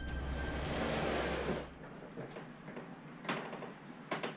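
A door being opened: handling noise with a low hum that stops a little under two seconds in, then a single sharp click about three seconds in.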